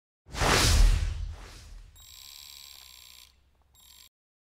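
A news channel's end-of-report transition sting: a loud whoosh with a deep low rumble that fades out over about a second and a half, followed by a steady electronic tone that holds for about a second and then stops.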